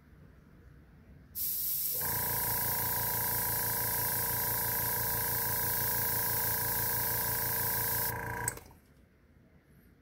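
Gravity-feed Iwata airbrush spraying paint, a steady hiss of air starting about a second in and cutting off about eight seconds in. Under it a steady motor hum, the airbrush compressor running, starts about two seconds in and stops just after the spraying.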